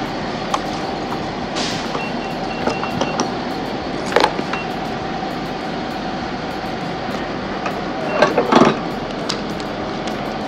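Petrol pump being set up for fuelling over a steady hum: a quick run of about five short high beeps about two seconds in, one more beep a little later, and a few clicks and clatters as the fuel nozzle is handled and put into the motorcycle's tank.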